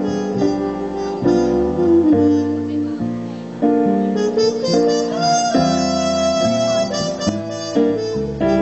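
Trumpet playing a jazz ballad solo over electric guitar and keyboard accompaniment, with notes that slide between pitches and a long held note in the second half.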